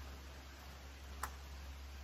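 Faint room tone with a steady low hum and a single sharp click just over a second in.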